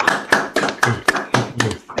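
Scattered applause over a video call: several people clapping into their own microphones, irregular claps, with voices mixed in underneath.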